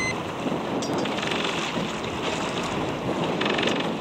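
Wind buffeting the microphone over the wash of choppy water, a steady rushing noise.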